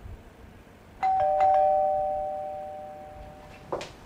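Two-tone ding-dong doorbell chime: a higher note, then a lower one a moment later, ringing out and fading over about two and a half seconds. A short click follows near the end.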